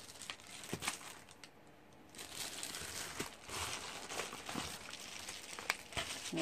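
A plastic mailing package being handled and pulled open, crinkling and rustling, with a short lull about two seconds in and a sharp click near the end.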